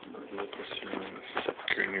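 Rustling and a few sharp knocks from a phone being handled and covered, under low voices; a man starts speaking near the end.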